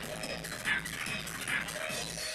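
Electronic dance music from a DJ set played over a club sound system, with a high-pitched sound in the track repeating a little more than once a second over a steady low beat.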